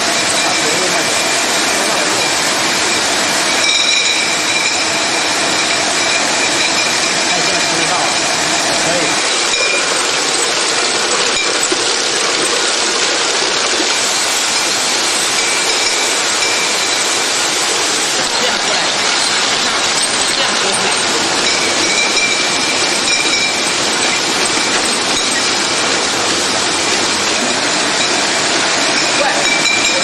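Glass bottle labeling line running: a steady mechanical clatter from the conveyor and labeler, with glass bottles clinking against each other and a faint, steady high whine that fades in and out.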